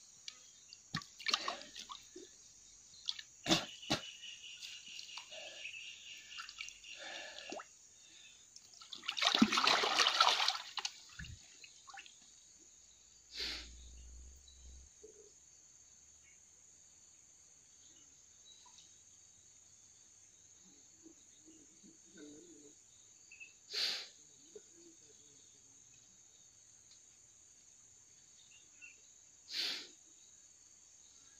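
Water splashing and sloshing in a small pool as a man ducks under the surface between logs, with one loud splash about a third of the way in, then mostly quiet with a few brief splashes. A steady high insect drone runs underneath.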